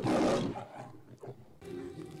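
A lion roar from the MGM logo intro: one short, rasping roar at the start that dies away within about half a second.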